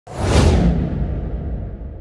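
Video-editing transition sound effect: a single whoosh with a low rumble beneath it, starting suddenly and fading out over about two seconds.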